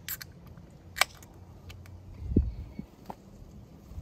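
Handling of an aluminium beer can and a drinking glass: a sharp click about a second in, a few lighter clicks, and a dull thump a little past the middle.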